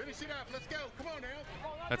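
Faint voices of people talking in the background, well below the level of the broadcast commentary.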